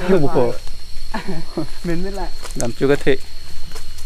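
A man's voice talking in short phrases, with a faint steady high-pitched tone underneath.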